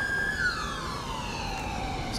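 Ambulance siren: a high held tone that, shortly after the start, slides steadily down in pitch.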